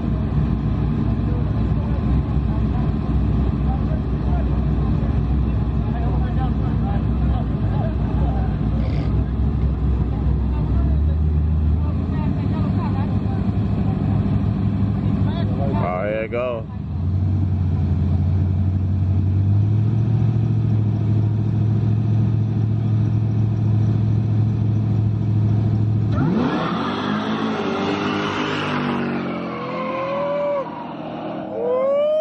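V8 street-race cars holding revs at the starting line, a loud low drone that steps up in pitch twice. Near the end they launch: the drone gives way to a wide rush of engine noise with rising revs as they pull away.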